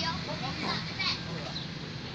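Faint, brief children's voices in the first second or so over a steady low background hum.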